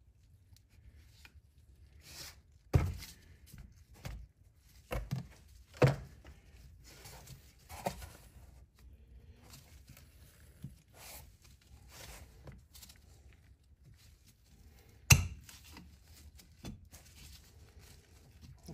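Scattered sharp metal knocks and clinks as the brake ring of a Laycock D-type overdrive is pried off and its parts are handled in the housing, the loudest knock about fifteen seconds in.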